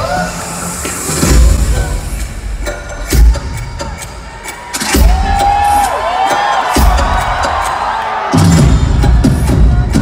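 Live pop concert heard from the audience: a loud dance track with a pounding bass beat plays over the arena sound system while the crowd cheers. The bass drops out twice for a moment and then comes back.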